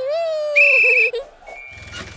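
A drawn-out high cheering voice note that fades out after about a second, with a short bright ding-like tone in the middle of it, over children's background music that turns quieter and thinner after it.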